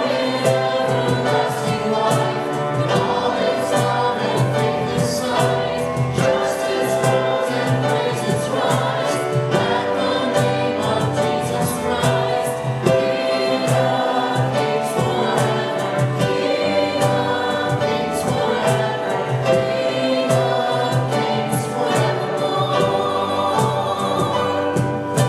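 Live worship band singing a hymn, voices over acoustic guitar, flute, keyboard and cajon, with a steady beat.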